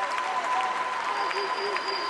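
Audience applauding in a large hall, with voices calling out over the clapping and a steady high tone running through it.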